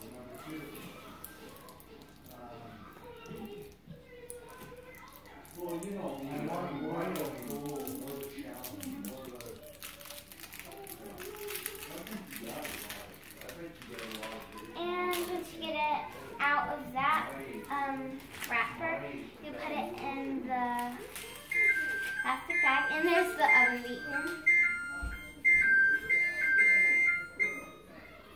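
Children's voices chattering in the background, then, from about 21 seconds in, a run of loud, high electronic beeps at two alternating pitches: the oven timer going off as its countdown runs out.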